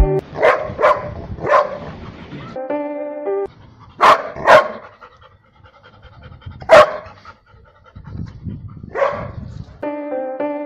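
A dog barking in short, sharp single barks, about seven in irregular groups: three in the first two seconds, two around four seconds in, the loudest near seven seconds in, and a last one near the end.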